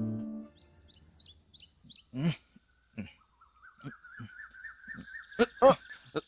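The last notes of a music track die away, then birds chirp: quick high chirps, then a long wavering trill, with a few short, louder calls in between.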